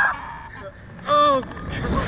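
A rider's short, high vocal exclamation about a second in. Low wind rush builds on the microphone near the end as the Slingshot ride capsule swings through a flip.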